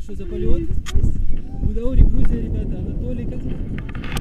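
Wind buffeting a helmet-mounted action camera's microphone in a gusty low rumble, with voices talking over it.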